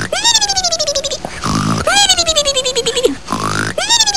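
Exaggerated, comic snoring from a man asleep on a sofa: a rasping snore that jumps up and then slides down in pitch, repeated about every two seconds, three times.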